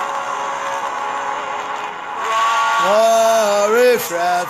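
A man singing a worship song over backing music. The first couple of seconds are the backing music alone; about three seconds in his voice comes in with long held notes.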